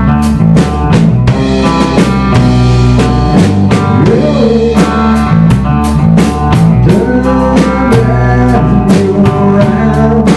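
Rock band playing live: a drum kit keeping a steady beat under electric guitar and bass guitar, in a blues-rock style.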